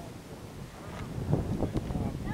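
Wind buffeting the microphone in uneven gusts, growing louder about halfway through.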